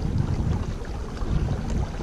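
Steady low rumble and hiss of a kayak moving through calm water at trolling speed, with wind on the microphone.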